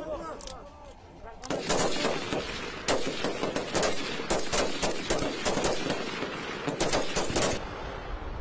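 Several Kalashnikov-pattern assault rifles firing together from a trench line: a few scattered shots, then from about a second and a half in a dense, rapid volley of overlapping shots that stops shortly before the end.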